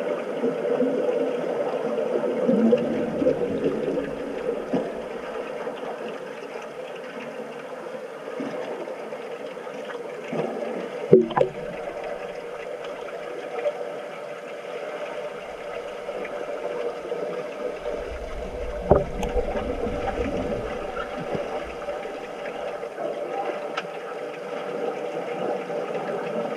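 Swimming-pool water heard from underwater during an underwater rugby game: a steady muffled wash of churning water and bubbles from the swimmers, broken by a few sharp knocks, the loudest near the middle and about three-quarters through.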